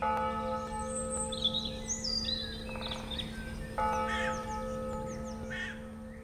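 A bell struck twice, about four seconds apart, each stroke ringing on over a steady low hum, with birds chirping throughout. The sound fades out near the end.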